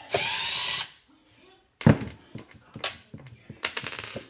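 Power driver running for under a second as it backs a screw out of the top of a tube amp head, then stopping. A few sharp clicks follow.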